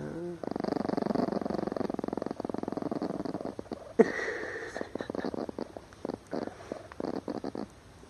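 A chihuahua growling: a long rapid rattling growl, then a sharp click about halfway through, then the growl comes back in short bursts. The growl is the warning of an angry dog being approached.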